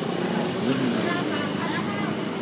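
Steady street ambience: running traffic noise with faint background voices.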